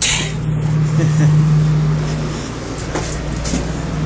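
Running noise inside an Odakyu 30000-series EXE Romancecar: a steady low hum over a rumble, the hum dropping away about two and a half seconds in, and a sharp click about three seconds in.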